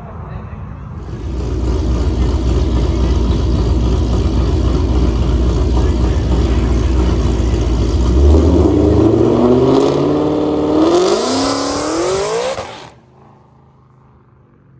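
Drag car engine launching and accelerating hard: a deep rumble at the line, then the engine note climbs steadily, drops once at a gear change and climbs again. The sound cuts off abruptly near the end.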